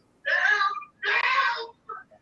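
A person's voice making two breathy, whispery sounds about a second apart, each a little over half a second long.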